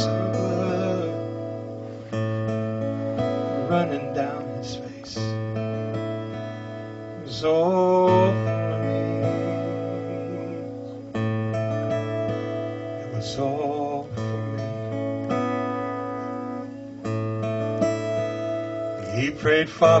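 Acoustic guitar played solo, slow strummed chords, a new chord about every three seconds and each left to ring and fade.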